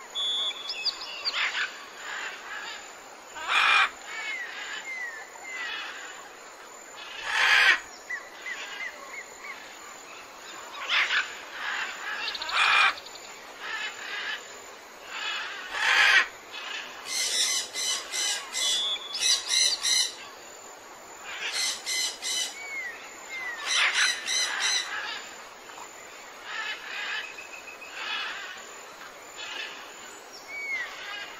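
Parrots calling: loud harsh squawks every few seconds, with runs of rapid, repeated screeching calls in the second half, over lighter chirping from other birds.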